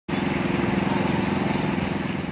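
A small engine or motor running steadily with a fast, even pulse, over the hiss of fountain jets splashing.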